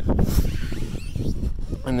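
Wind rumbling on a phone microphone, a steady low noise, with a man's voice starting near the end.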